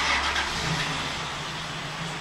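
A sudden rush of air noise as a sliding door opens onto a balcony, dying away over about a second and a half into steady outdoor background hum.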